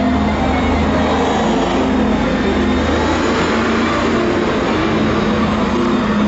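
Steady, loud street noise, with a motor vehicle running close by as a continuous low hum.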